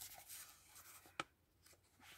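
Faint rustling of thin memo-pad paper sheets being handled and fanned out by hand, with one short click about a second in.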